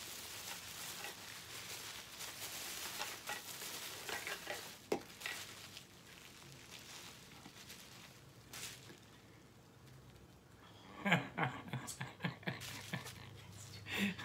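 Bubble wrap and plastic packing being handled and pulled open: a steady crinkling rustle for the first several seconds with a few sharp clicks, then quieter handling. A man's low voice comes in briefly near the end.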